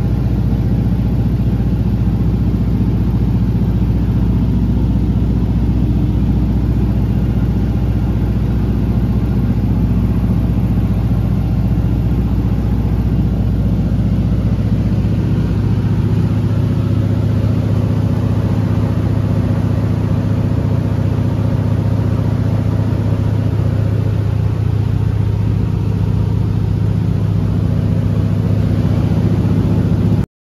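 A small propeller plane's engine and propeller droning loudly and steadily in cruise flight, heard from inside the cabin.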